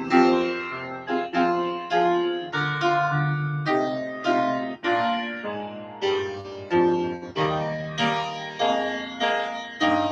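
Piano playing a slow tune in full chords, each chord struck and left to ring, about one or two chords a second.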